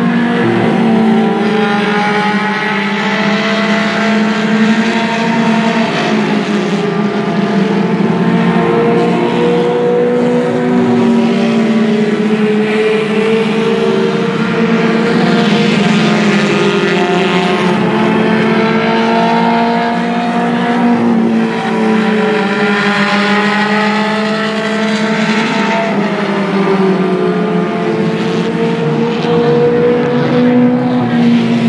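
Several Mini Stock and Hornet four-cylinder race car engines running at speed together on the oval, their pitches rising and falling as the cars lap and pass.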